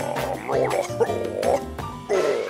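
Croaky, garbled cartoon voice sounds that bend up and down in pitch, over background music with a pulsing bass.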